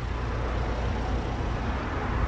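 Steady low rumble with a hiss over it: outdoor background noise, with no separate sound standing out.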